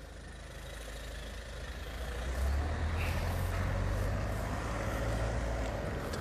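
A car driving past close by. Its engine and tyre noise build to a low rumble about two seconds in, then hold steady.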